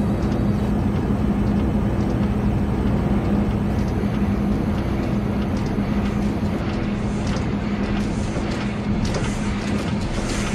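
Industrial techno sketch built from synthesized factory-machinery noise (the myNoise Industrial Revolution generator) with a heavily distorted synth: a dense, steady mechanical rumble under a sustained low drone. Short sharp hits start coming in about two-thirds of the way through.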